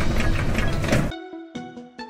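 A hamster's homemade paper-plate exercise wheel spinning with a loud rhythmic rattle, which stops suddenly about a second in. Background music carries on after it.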